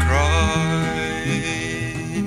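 Early-1970s prog-folk song: a sung note bends down and trails off at the start, then sustained instrumental chords over a moving bass line.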